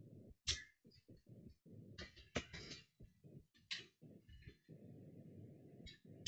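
Faint computer keyboard typing: a handful of separate key clicks, a small cluster about two seconds in, over a low steady hum that cuts in and out.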